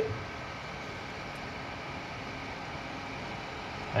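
Peltier water chiller running with a steady whir: its cooling fan blowing and a small 12 V water pump circulating water through the hoses.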